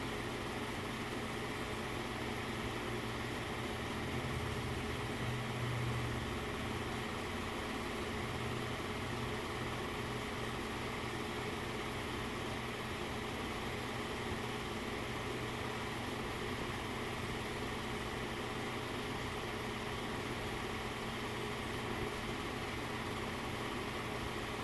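Steady hum and hiss of a running film projector's motor and fan, with a slight low swell about five seconds in; no crowd or commentary is heard.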